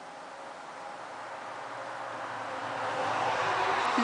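A steady rushing noise that grows gradually louder.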